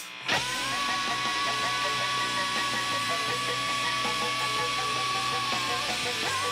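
Live rock band with distorted electric guitars, bass, drums and violin comes back in loud after a short break, about a quarter second in. Over it one high note is held steady for about five seconds, changing near the end.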